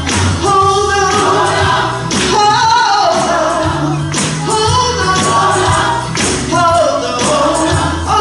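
Gospel choir singing with band accompaniment, a lead voice carrying the melody over a steady bass line and percussion.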